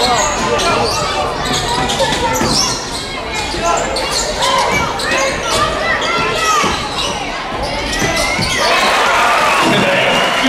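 Live basketball game sound: a ball bouncing on a hardwood court, with short sneaker squeaks and players' shouts and calls.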